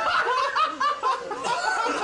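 A group of people laughing, several voices overlapping in quick, repeated chuckles.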